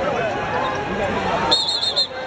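Men's voices exchanging words as players square off on a basketball court, over steady arena background noise. Near the end comes a brief high-pitched sound of four quick pulses.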